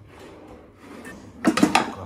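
A kitchen drawer full of frying pans is pulled open. The pans inside clatter against each other with a few sharp knocks about one and a half seconds in.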